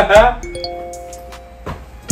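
A chime of several held tones that enter one after another about half a second in and fade out about a second later, with the end of a voice at the start.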